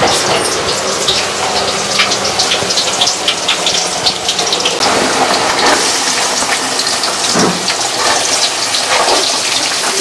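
Stovetop cooking: a steady bubbling and sizzling with many small crackles throughout, from a pot of greens at the boil and sliced onions frying in oil in an aluminium wok.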